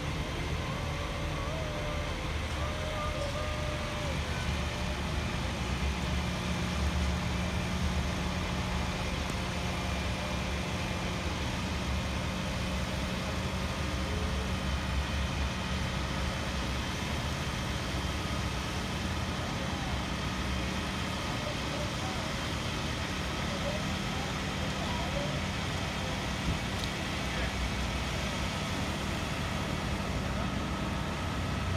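Heavy boom crane truck's engine running steadily, a low, even drone with a constant hum.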